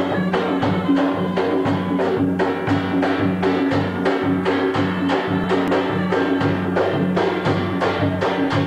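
Drums playing a quick, even dance beat over held pitched notes.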